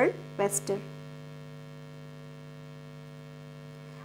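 A woman's speaking voice for under a second, then a steady low electrical hum in the recording with nothing else over it.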